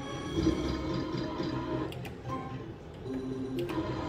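Book of Ra Classic slot machine's electronic free-spin jingle and reel sounds, with a sharp click near the middle and a short run of steady tones near the end as a small win is added to the bank.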